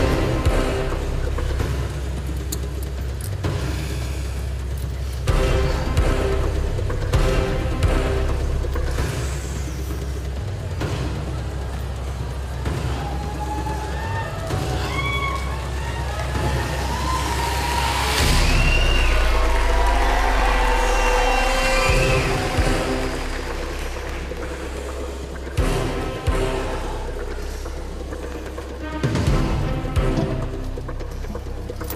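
Dramatic stage music with a deep, steady drone and evenly spaced heavy hits. In the middle, the music is overlaid by many short rising and falling calls over a swelling noise, like an audience whooping and cheering, which then fades.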